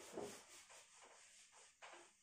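Handheld whiteboard eraser wiping marker off a whiteboard: a series of faint rubbing strokes.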